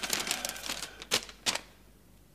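A letter's sheet of writing paper rustling and crackling as it is unfolded, with two sharp snaps of the paper a little after a second in, then quiet.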